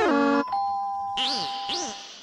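Two-note doorbell chime, ding-dong: the higher note gives way to a lower one just after the start and the chime stops about half a second in. Background music follows.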